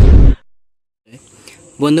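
A loud, bass-heavy burst of noise from an edited-in transition sound effect, cutting off sharply about a third of a second in, followed by a short silence before speech starts near the end.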